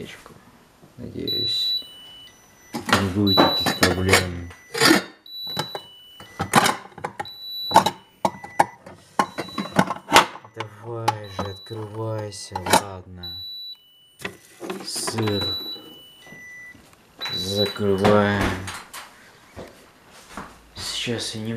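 A man's voice making sounds without clear words in several stretches, among frequent knocks and clicks from a phone being handled close to the microphone.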